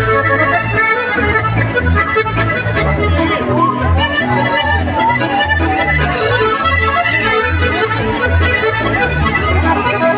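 Live chamamé music: two button accordions carrying the melody over guitar and a regular pulsing bass, played through a PA system.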